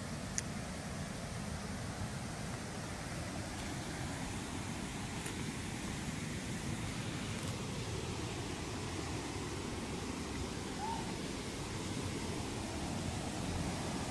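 Steady rushing of a waterfall's rapids, growing slightly louder toward the end.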